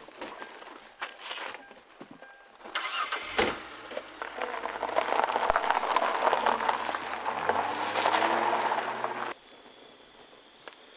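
A car engine starts about three seconds in and runs steadily, then cuts off abruptly near the end.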